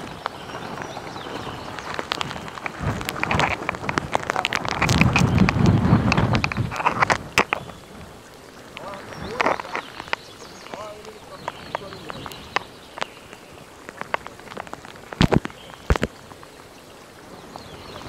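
Monsoon wind and rain: a steady rushing noise with scattered sharp taps like raindrops striking. A strong gust buffets the microphone about five to seven seconds in, the loudest part.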